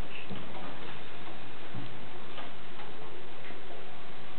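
Steady hiss of a quiet hall with a few faint, irregular ticks and small knocks as a string-and-flute quartet settles its instruments into playing position just before starting.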